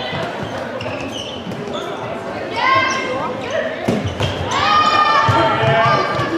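Handball play in a large, echoing sports hall: the ball bounces on the court floor among scattered sharp knocks. High-pitched drawn-out squeals from the players come twice, about midway and again near the end.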